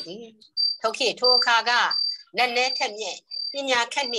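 A person speaking in Burmese in short phrases with brief pauses, over a thin, steady high-pitched tone that comes and goes in the background.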